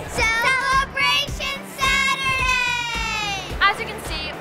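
Group of children shouting and cheering together, ending in one long high call that slides down in pitch, over background music.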